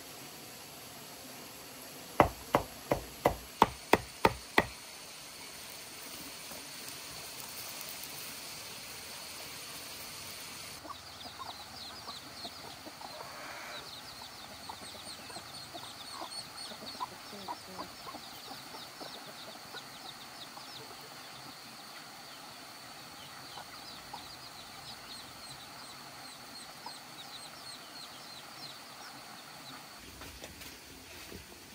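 Poultry clucking and peeping in many short high calls, after a quick run of about seven sharp knocks near the start, about three a second.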